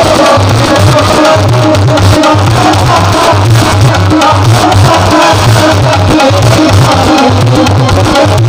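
Live instrumental devotional music: tabla keeping a fast, steady rhythm under a bamboo flute melody.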